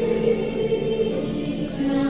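Mixed choir of men and women singing long held notes, the chord changing near the end.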